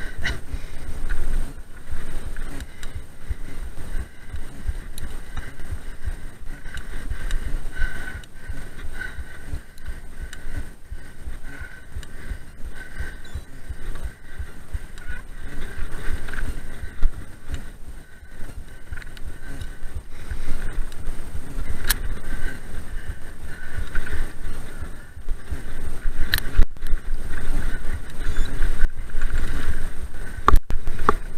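Mountain bike ridden fast over a rough, leaf-strewn dirt singletrack: constant rattling and jolting of the bike and tyres on the ground, with wind rumble on the microphone and sharp knocks about two-thirds of the way through and again near the end.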